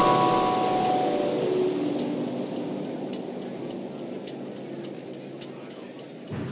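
Pinewood derby cars running down an aluminium track, with a ringing, rumbling sound that falls in pitch and fades over a couple of seconds, and sharp ticks scattered through it.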